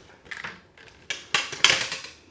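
Small watercolor half-pans and loose paint cakes clicking and rattling in a pan palette as they are handled, in a short burst about half a second in and a denser, louder run in the second half. The paint cakes have fallen out of their pans.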